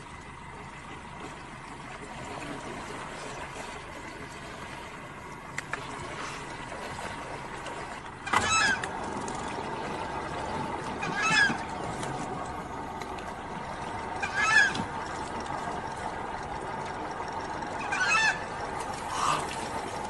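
A bird calling in short, separate calls, five of them spread over the second half, each a few seconds apart, over a steady background hiss that grows louder partway through.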